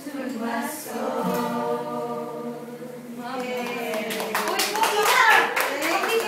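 A group of voices singing together to an acoustic guitar, holding long notes. From about four seconds in, hands clapping join in over the voices.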